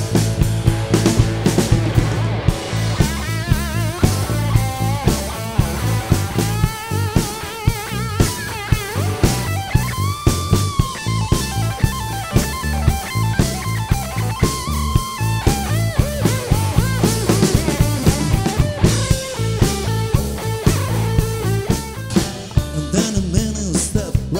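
Live rock trio playing an instrumental passage: an electric guitar lead with bent, wavering notes over bass guitar and a drum kit keeping a steady beat.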